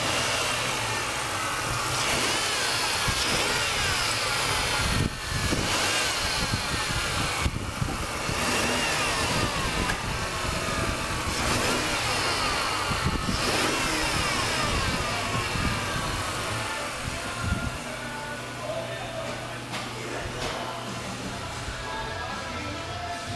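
A car's 3.0-litre V6 engine running, its pitch rising and falling several times, with a few knocks along the way.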